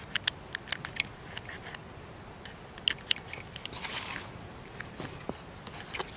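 Small plastic clicks and rattles of USB plugs and cables being handled and plugged in, with several sharp clicks in the first second, a few more around three seconds in and a brief rustle near four seconds.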